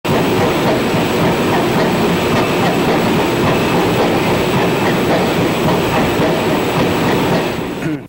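Loud, steady clatter and rumble of heavy machinery running, which cuts off suddenly at the end.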